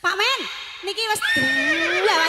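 A woman's singing voice through a stage PA, starting a phrase with quick up-and-down sliding ornaments and then holding one long note that rises slightly in pitch, with little or no accompaniment.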